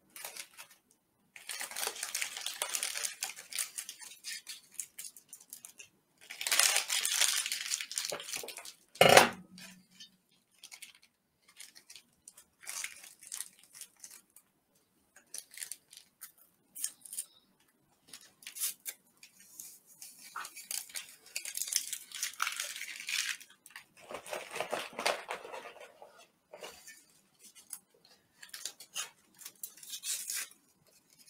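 Plastic MRE ration packaging rustled, crinkled and torn open by hand in several spells, with packets set down on a metal tray. One loud clatter comes about nine seconds in.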